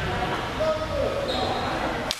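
Ambience of a floor hockey game in a gym during a faceoff: a steady low rumble of the hall with players' voices, and a short high-pitched squeak about a second and a half in.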